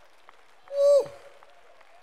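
Faint, scattered clapping from a congregation answering a call to praise, with one high, falling shout of "woo!" about a second in.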